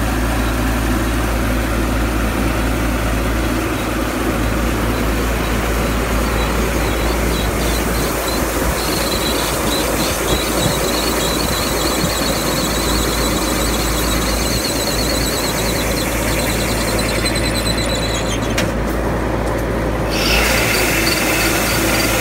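Rice combine harvester with an Isuzu 6BG1 six-cylinder diesel running under load, its unloading auger pouring threshed rice into a truck bed. The machinery makes a loud, steady noise with a high, rapidly pulsing squeal through the middle. The sound changes near the end.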